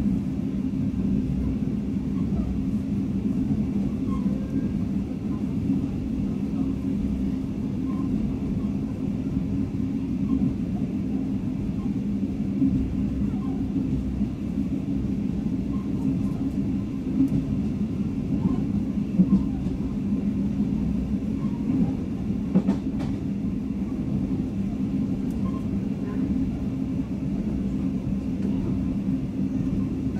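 Steady running rumble of a State Railway of Thailand sleeper train, heard from inside the carriage at speed, with a constant low hum and a couple of louder knocks about two-thirds of the way through.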